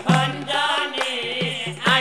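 Assamese nagara naam devotional music: voices singing a chanted verse over a steady beat of struck drums whose low notes ring briefly after each stroke.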